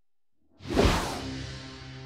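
Dramatic soundtrack sting: after a short silence, a sudden whoosh with a low hit about half a second in, settling into a held low chord.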